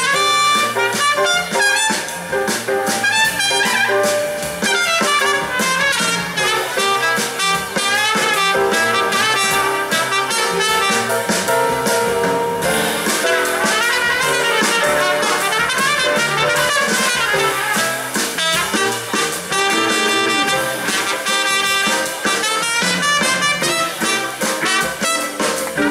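Live jazz-funk band playing, with trumpet and saxophone over electric guitar, keyboards, bass guitar and drum kit.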